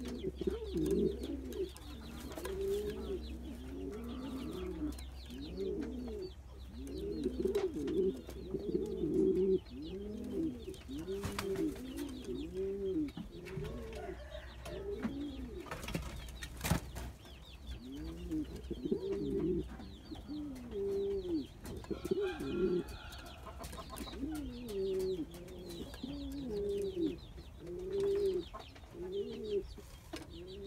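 Cuban pouter pigeon cooing over and over, each coo a low rising-and-falling call, coming about every half-second with a couple of short pauses. It is the bird's defensive cooing at the keeper who has come into its coop.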